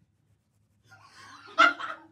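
A man gagging at a foul taste: a short strained, retching vocal noise about a second in, sharpest just past the middle.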